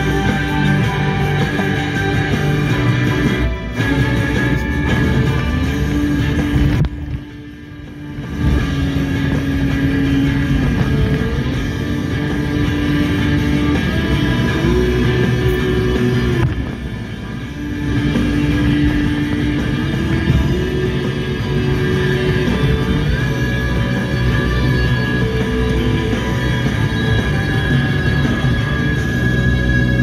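Rock music with guitar playing on a car radio inside the car's cabin, with two brief dips in level, about seven and seventeen seconds in.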